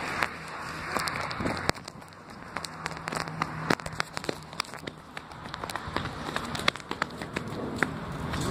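Rustling and scattered crackling clicks from a phone being carried against clothing, the fabric rubbing over the microphone as the person walks.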